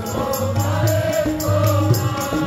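Sikh kirtan: a harmonium and tabla accompany sung Gurbani, with the congregation singing along. A steady beat of sharp strokes comes about four times a second.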